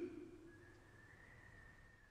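Near silence: the tail of the preceding voice fades out within the first half second, then only a faint, thin, steady high tone remains.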